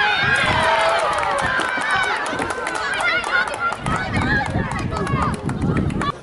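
Football players and spectators shouting excitedly all at once, many high voices overlapping, breaking out suddenly as a shot flies at the goal and the goalkeeper dives.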